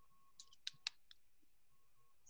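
A short run of sharp clicks in quick succession, the loudest just under a second in, against near silence: a person clicking at a computer.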